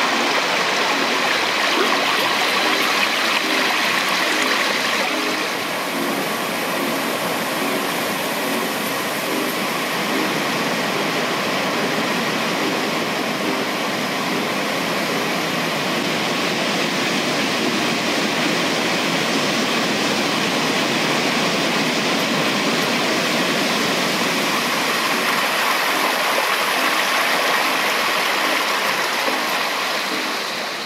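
Rushing, splashing water of a stream or small waterfall, a steady, dense sound that eases slightly about five seconds in.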